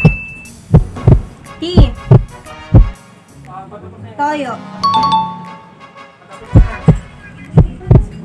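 Edited-in suspense music built on heartbeat-like thumps that come in pairs about once a second. About four to five seconds in there is a short warbling electronic chirp and a couple of beeps.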